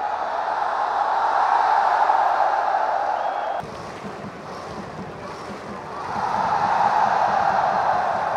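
Large stadium crowd of football fans cheering in a continuous roar. It builds, drops sharply a little over three seconds in, and swells back up from about six seconds.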